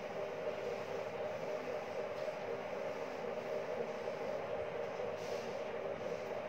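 Steady mechanical hum of a running machine in the room: a constant drone with a couple of steady tones, unchanging throughout.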